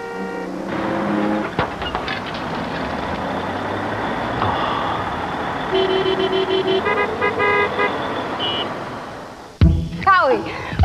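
Street traffic noise with a car horn honking in a quick run of short toots a little past halfway, then one more brief toot.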